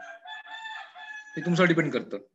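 A faint, drawn-out animal call held on a steady pitch for just over a second, before a man's voice comes in.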